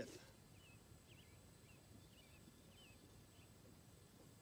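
Near silence on an open field, with a series of faint, short high bird chirps roughly every half second.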